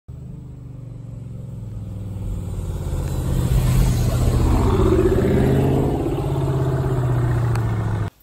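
Dodge Charger R/T's 5.7-litre HEMI V8 running as the car drives up close to the microphone. It grows louder over the first four seconds, then holds steady.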